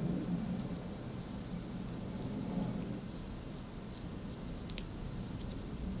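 Faint rustling of layered coat fabric and quilted lining being handled and pinned, with a few faint ticks.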